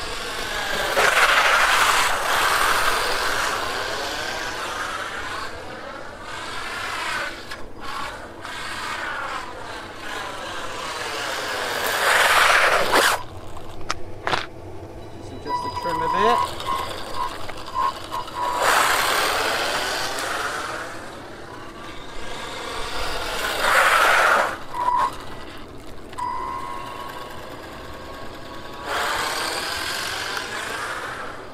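WLToys 124019 RC buggy's brushed electric motor and gearbox whining as the car speeds past on tarmac several times, the whine rising and falling in pitch as it comes toward the camera and goes away.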